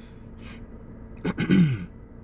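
A man breathes in, then clears his throat about a second and a half in: a short, loud voiced rasp that falls in pitch.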